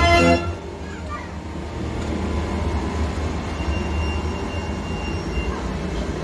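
Merry-go-round organ music ends about half a second in, leaving fairground ambience: a steady low rumble with faint crowd voices and occasional short whistle-like glides.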